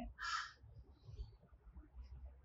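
A single short, harsh caw from a crow near the start, over faint outdoor background.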